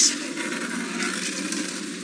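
Open safari vehicle pushing slowly through gwarri bushes: a steady rustling hiss of leaves and branches brushing past the vehicle.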